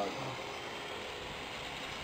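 Radio-controlled hexcopter in flight at a distance: its electric motors and propellers give a steady buzz.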